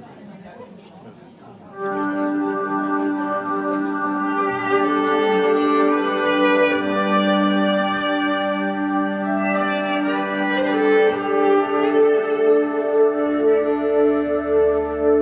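Electric violin starting a slow Highland-style tune about two seconds in, bowed over steady held drone notes beneath the melody. A low bass guitar line joins near the end.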